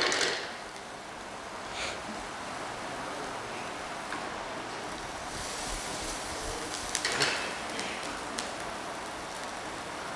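Onion, garlic, green pepper and leeks sizzling steadily as they fry in melted margarine in a wok, with a few faint knocks of the pan about two seconds in and again around seven seconds in.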